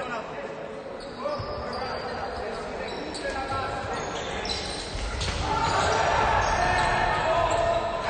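A basketball bouncing on a hardwood court in a large, echoing gym, with a few sharp knocks in the first seconds. Players' voices grow louder from about five seconds in.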